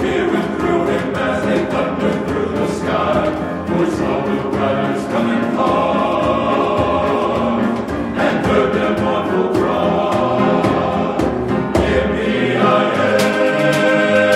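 Male chorus singing in harmony, with percussion accompaniment.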